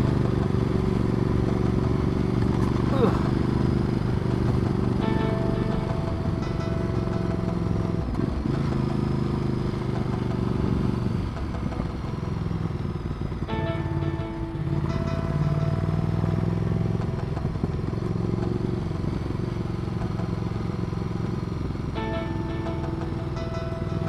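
Ducati Multistrada 1200's L-twin engine running under load on a steady climb, the revs dropping and picking up again about midway, with wind and road noise.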